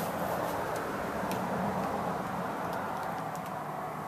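Steady background noise, an even hiss with no pitch, with a faint click or two such as a light tap.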